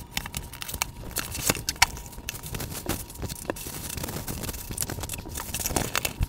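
A cardboard shipping box being opened and unpacked: packing tape cut and torn, then cardboard flaps and boxes handled, with a busy run of small scrapes, rustles and knocks.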